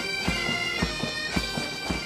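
Pipe band playing a march: a bagpipe melody over steady drones, with a bass drum beating about twice a second.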